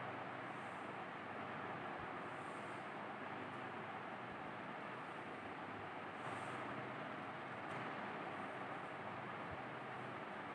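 Steady low hiss of room and recording noise, with a few faint, brief scratches of chalk drawing lines on a chalkboard.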